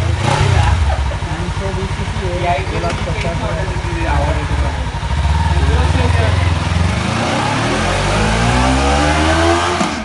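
Kawasaki Ninja 300's parallel-twin engine running at a steady idle. Over the last few seconds its pitch climbs steadily as the revs rise.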